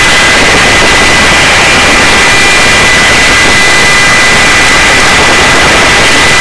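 Helicopter in flight heard from a camera on board at its open door: loud, steady engine and rotor noise with a steady high whine running through it.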